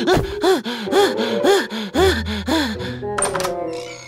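A cartoon voice giving a run of short strained grunts, about two a second, each rising and falling in pitch, as a stuck cupboard door is tugged open, over background music.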